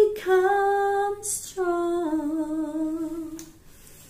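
A woman singing solo, a slow worship song, holding long notes with vibrato over two phrases with a quick breath between them. The singing stops about three and a half seconds in.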